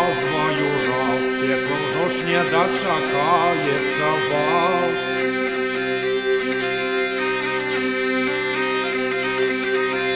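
Hurdy-gurdy played with its crank-turned friction wheel: steady drone strings sound under a melody on the keyed strings. A man sings over it for about the first five seconds, then the instrument goes on alone.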